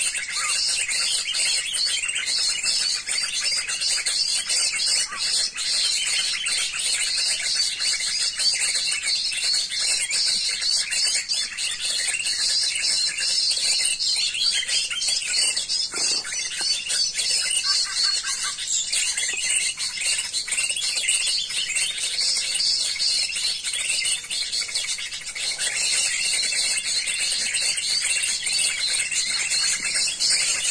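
Dense, steady chorus of many birds chirping and twittering at once, high-pitched and unbroken: the noisy-forest-birds mp3 recording played to lure drongos.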